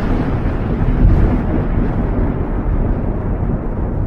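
A loud, low rumbling sound effect that holds steady while its higher hiss slowly dies away.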